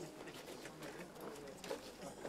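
Faint noise of a jostling crowd: distant indistinct voices with scattered knocks and shuffling.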